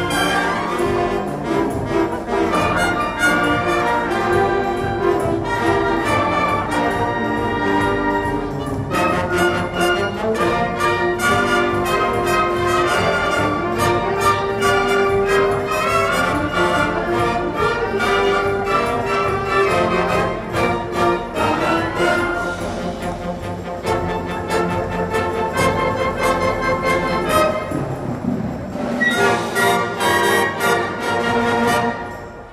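Symphonic band of brass and woodwinds playing a piece of concert music together.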